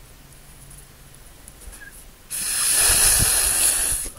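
Blowing hard through a drinking straw onto a drop of watery watercolor paint, spreading it across the paper in streaks: a loud rush of air that starts about halfway through and lasts nearly two seconds before stopping.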